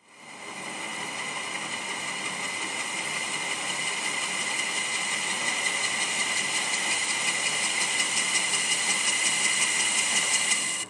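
Metal lathe turning a workpiece while a facing cut is taken, the tool peeling off long stringy chips. It is a steady hiss with high whining tones that builds up over the first second and grows slightly louder as the cut goes on.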